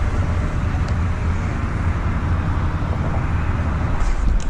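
Steady outdoor rumble and hiss with no distinct events, typical of wind on the microphone and traffic noise on a fishing pier.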